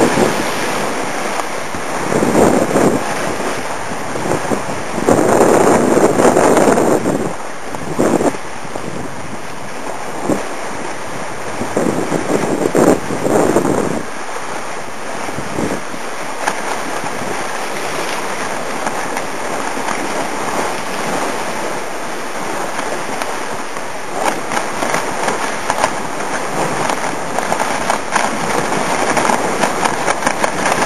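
Water rushing past the hull of a sailing trimaran under way, with wind buffeting the microphone. The noise swells and eases in surges every few seconds.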